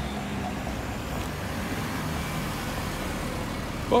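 Street traffic noise: a car driving past at low speed, a steady low rumble with road hiss.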